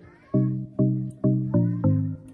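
Background music: a steady melody of short, sharply struck notes, about two to three a second, each fading before the next.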